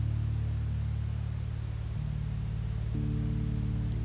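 Slow background music of sustained low notes, with the chord changing about two seconds in and again about three seconds in.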